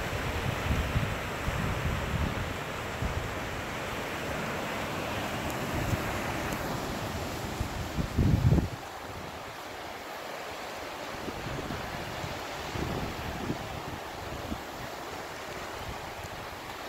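Wind buffeting the microphone in gusts over the steady wash of sea surf, with a strong gust about eight seconds in, after which it settles to a quieter, even rush.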